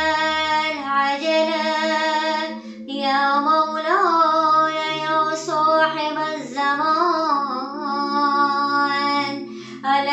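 A woman chanting an Arabic supplication in long, held melodic notes with slow wavering pitch, pausing briefly to breathe about a second and three seconds in, over a steady low drone.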